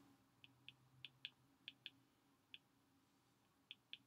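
Faint, sharp ticks of a stylus tip tapping a tablet's glass screen as letters are handwritten, about nine of them at uneven intervals over a faint steady hum.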